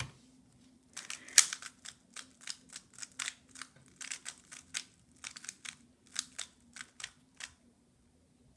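A 3x3 speed cube being turned by hand, a quick irregular run of sharp plastic clicks, several a second, in bursts as the cube is scrambled.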